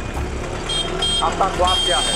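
Street noise with a high-pitched electronic beep: two short beeps, then one long held tone from near the end. A man's voice is heard briefly.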